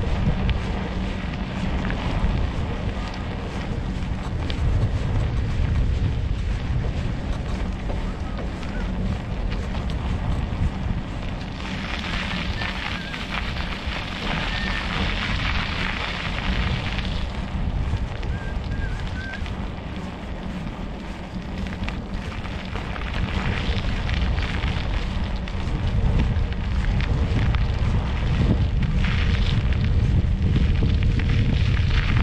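Wind buffeting the microphone of a camera on a moving bicycle, a steady low rumble with a louder hiss for several seconds in the middle.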